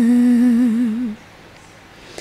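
A woman singing unaccompanied, holding the last note of a phrase with a gentle vibrato; the note ends about a second in.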